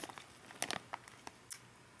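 Faint crinkling of a plastic snack wrapper being handled, with a few short crackles.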